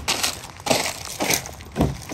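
Four crunching footsteps on dry fallen leaves, evenly paced, the last a heavier thud.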